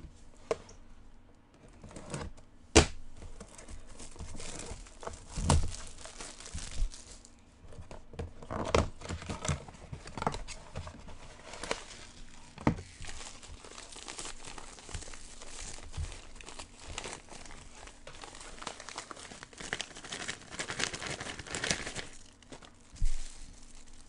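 Plastic shrink-wrap and packaging crinkling and tearing as a sealed cardboard box is unwrapped and opened, with sharp snaps and clicks throughout; near the end a plastic bag around a baseball crinkles as it is handled.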